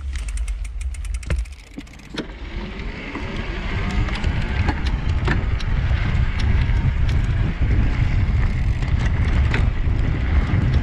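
Electric mountain bike with a Yamaha PW-X mid-drive motor setting off under pedalling in the highest assist level. From about two seconds in, a low rumble builds as the bike picks up speed over dirt, with a faint rising motor whine and scattered drivetrain clicks.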